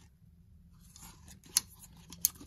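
Small handling noises of a camera lens and its stacked metal screw-in filters being turned in the hand: soft rubbing and scraping, then a sharp click about a second and a half in, over a low steady hum.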